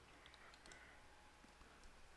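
Near silence with a few faint computer-keyboard clicks: a small cluster a quarter to three quarters of a second in, and one more near the end.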